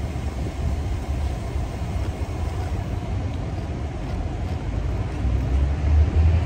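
Steady low rumble of nearby car engines, growing a little louder near the end.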